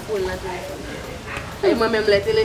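Speech only: a woman talking, louder and more emphatic near the end.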